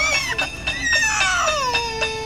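A toddler crying and whining: a short high cry, then a long wail that slides down in pitch.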